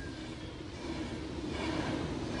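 Railway coaches rolling past on the track: a steady rumble of wheels on rail that grows a little louder in the second half.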